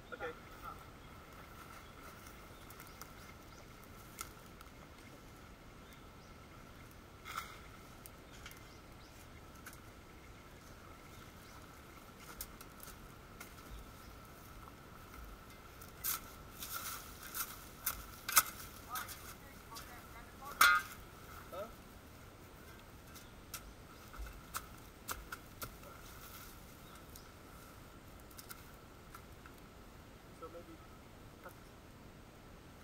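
Hand tools scraping and chopping into soil and undergrowth on a slope: a run of sharp scrapes and knocks past the middle, two of them much louder than the rest. A faint steady high-pitched tone runs underneath.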